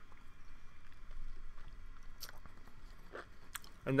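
A person chewing watermelon close to the microphone: faint, irregular wet chewing with a few small clicks.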